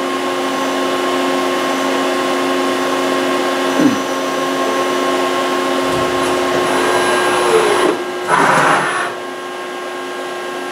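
CNC vertical mill running a dry-run rigid tapping cycle: a steady machine hum, with a falling whine about four seconds in and a shorter one near 7.5 seconds as the spindle changes speed. A short noisy rush near the end comes as the spindle head moves up.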